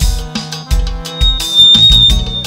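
Live party band playing an instrumental passage with held instrument notes over a steady kick-drum beat.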